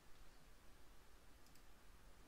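Near silence, with a faint computer mouse click about one and a half seconds in.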